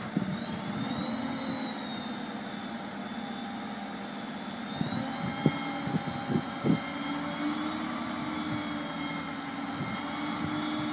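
Succi-Lift SR5 hooklift's hydraulic pump whining steadily with the truck engine running, as the lift cylinder tips the bin up; the whine rises a little in pitch near the start and again later. A few short knocks come about halfway through.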